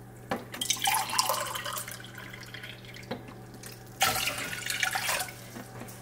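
Water being poured into a metal saucepan on a stove, in two separate pours: one starting about half a second in and one about four seconds in. The water is being measured out by the cupful.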